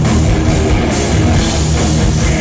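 Heavy rock band playing live and loud: distorted electric guitars and bass over a drum kit, with cymbals crashing a little more than twice a second.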